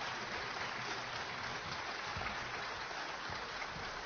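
Concert audience applauding: a steady, even wash of many hands clapping, fairly quiet.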